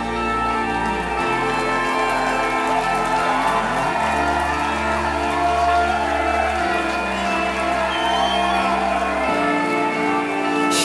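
Live rock-pop band playing an instrumental passage between sung verses: sustained chords over held bass notes that change every few seconds, with no singing.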